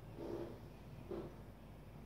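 Marker drawing on a whiteboard: two short strokes, about a quarter-second in and just after one second, faint.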